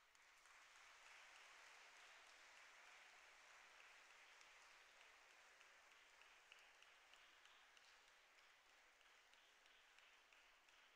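Faint applause from an audience, starting at once and slowly dying away.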